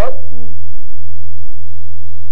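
Loud, steady low electrical hum on the recording, with a man's spoken word trailing off in the first half second.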